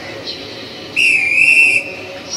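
A single high whistle blast, a little under a second long, about a second in, in a break where the band has stopped playing. It is a signal whistle used as a stage cue in the song.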